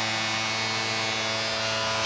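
Arena goal horn sounding one steady, low held tone over a cheering crowd, signalling a home-team goal.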